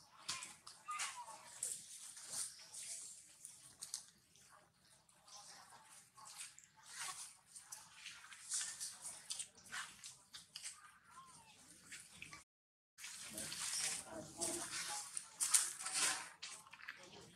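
Macaques moving and scuffling in a tree: leaves and twigs rustling and crackling in short bursts, with a couple of faint short squeaks. The sound drops out for a moment about three-quarters of the way in.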